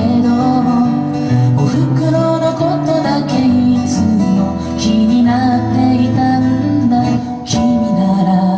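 A folk song played live on a steel-string acoustic guitar, a continuous melodic passage with chord changes and picked or strummed attacks.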